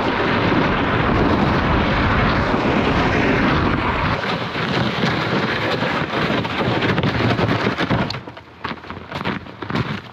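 Loud rumbling and rustling noise close on the microphone, like wind buffeting or clothing rubbing, as someone walks through deep snow. After about eight seconds it drops away, leaving separate crunching footsteps in snow.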